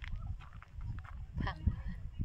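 Indistinct voices over a choppy low rumble, with one short wavering vocal sound about one and a half seconds in.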